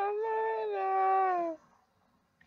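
A woman singing unaccompanied, holding one long note that sinks slightly in pitch and stops about one and a half seconds in.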